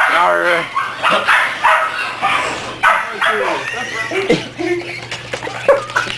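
Two puppies vocalising as they play-fight, with a string of short barks and squeals throughout.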